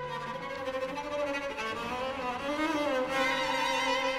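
String trio of violin, viola and cello playing a contemporary piece: one note held steady throughout, a low cello note at the start, and a line that slides up and back down in the middle.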